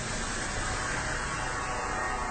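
Steady background hiss with a low rumble underneath, even and unchanging throughout.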